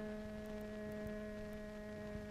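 A single long humming tone, held steady in pitch, that stops just before speech begins.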